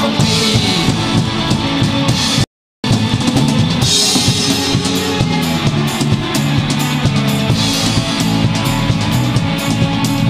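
Indie rock band playing live, an instrumental stretch driven by a drum kit with bass drum and snare keeping a steady beat. The sound cuts out completely for a split second about two and a half seconds in.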